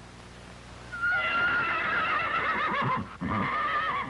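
A horse whinnying twice: a long wavering call that falls in pitch, then after a brief break a second, shorter one.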